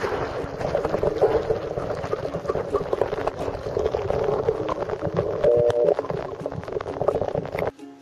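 Water rushing and bubbling against a camera held in a shallow river, full of small clicks and gurgles, with ukulele music playing underneath. The water noise cuts off abruptly near the end, leaving the ukulele.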